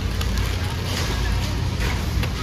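Low, rumbling background noise of a busy warehouse store, with a few faint knocks as shrink-wrapped cases of canned sparkling water are handled.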